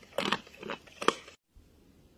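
Wild boar chewing food with a few crisp crunches, cutting off abruptly about one and a half seconds in.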